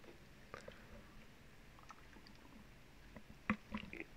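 Near silence, room tone with a few faint scattered clicks and two sharper short clicks near the end.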